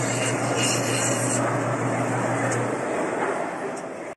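Steady background noise of a busy indoor market hall, with a low hum that stops about two-thirds of the way through. The sound drops away near the end.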